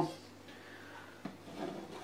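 Faint handling noise as a kitchen knife is worked into a moist sponge cake on a plastic cutting board, with one light tick a little after a second in.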